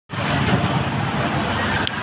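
Street traffic noise, a dense steady rumble with indistinct voices, cutting in suddenly as the sound track starts.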